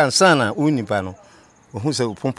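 A man speaking, with a short pause about a second in before he goes on. Insects chirp faintly behind the voice.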